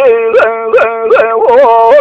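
A man singing Kurdish hore unaccompanied: one long held note broken by quick yodel-like upward flicks of the voice, about two or three a second.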